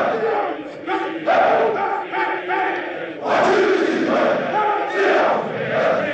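A large group of men's voices chanting and singing together in a film soundtrack, dipping a little then swelling louder about three seconds in.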